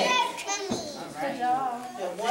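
Young children's voices talking and calling out over one another, with no clear words.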